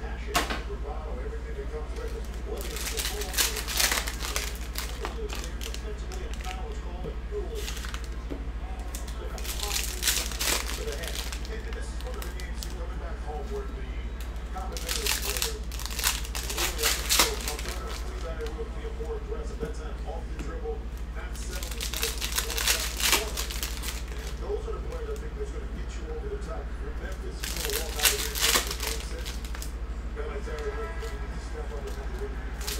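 Foil trading-card pack wrappers crinkling and tearing open as packs of baseball cards are opened by hand, in about six short bursts a few seconds apart.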